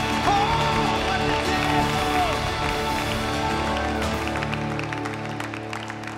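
A live worship band with drums, electric and acoustic guitars, piano and upright bass finishing a song: a singer's last sung lines in the first couple of seconds, then the held final chord fading out toward the end while people begin clapping.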